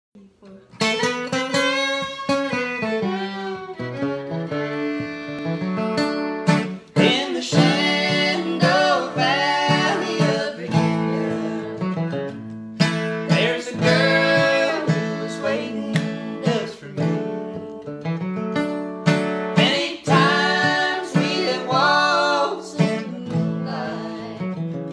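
Acoustic guitar strumming chords under a bowed fiddle melody in a bluegrass tune, starting just under a second in.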